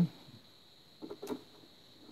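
Quiet room tone with a short cluster of faint clicks about a second in.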